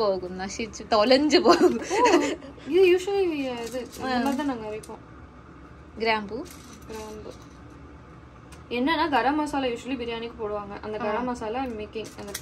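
Speech: people talking, with no other sound standing out above the voices.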